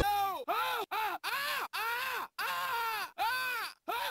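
A voice crying out in pain over and over: about seven short 'aah' cries in four seconds, each rising then falling in pitch, cut apart by abrupt silences as in a stuttering edit.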